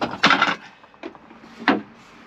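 Wooden frame battens being picked up and handled: a short clatter of timber knocking together about a quarter second in, a lighter knock about a second in, then a sharp knock near the end.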